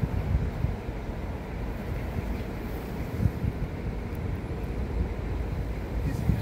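Uneven low rumble of wind buffeting the microphone, over the distant sound of a diesel multiple-unit train standing at the station platform.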